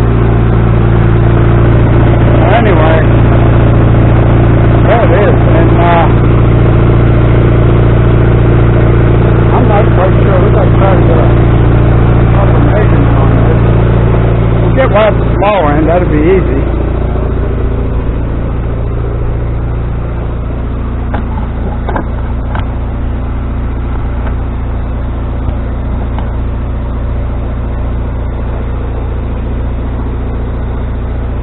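An engine idling steadily close by, dropping somewhat in level a bit past halfway.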